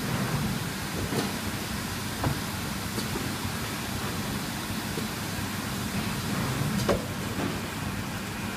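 Steady low machinery hum with a few faint knocks about one, two, three and seven seconds in.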